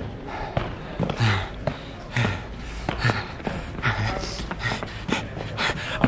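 A man breathing out audibly in short voiced huffs, roughly one a second.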